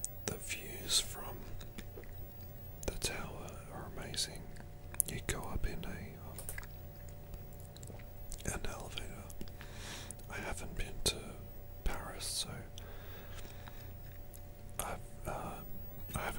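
Close-miked chewing and crunching of popcorn in the mouth, in short irregular bursts.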